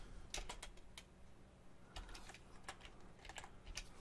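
Faint, irregular keystrokes on a computer keyboard as code is typed.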